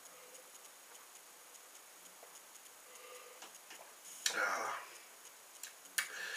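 A man drinking lager from a glass in a quiet small room: faint small swallowing and glass sounds, then a short breathy exhale after the sip about four seconds in.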